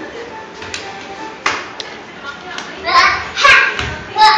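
Children playing and shrieking, with two loud high cries near the end and a thump about one and a half seconds in, over faint background music.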